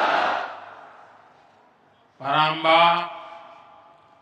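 A large crowd cheering and shouting, dying away over the first second or so. About two seconds in, a man calls out a drawn-out chanted phrase into a microphone.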